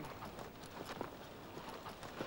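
Faint, uneven hoofbeats of several horses moving over grass.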